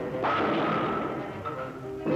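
Orchestral cartoon underscore holding sustained chords, entering with a sudden sharp hit about a quarter second in and then fading slowly.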